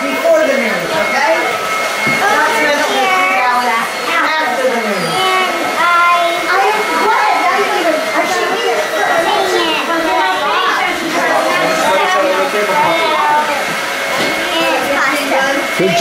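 Many voices of adults and children talking over one another in a busy room, a continuous jumble of chatter, with a faint steady hum beneath it.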